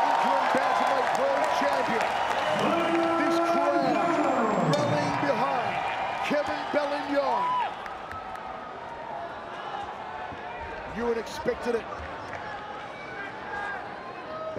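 Arena crowd shouting and cheering, many voices overlapping, loud at first and dropping noticeably quieter about halfway through.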